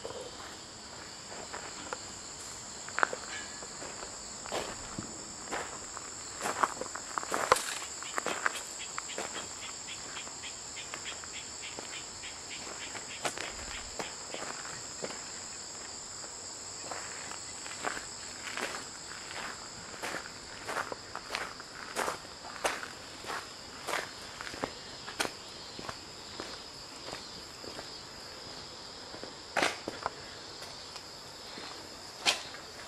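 Footsteps walking on a path, a series of irregular steps, over a steady high-pitched drone of insects.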